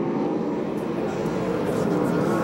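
Several sprint car V8 engines racing together on a dirt oval, a steady blend of engine notes whose pitches waver as the cars go through the turn.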